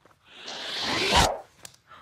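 A shoulder bag being opened and reached into: a zip-like rustle that swells for about a second and ends with a soft thud, followed by a couple of faint clicks.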